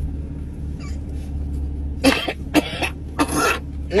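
An elderly woman coughing several times in quick succession from about two seconds in, wearing a face mask, over the steady low hum of a car cabin.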